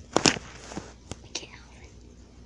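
A short, breathy whisper about a quarter second in, followed by a few faint clicks.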